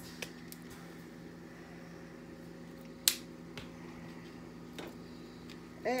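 Garlic powder shaker being handled over a slow cooker: a few light clicks and one sharp snap about three seconds in, over a steady low hum.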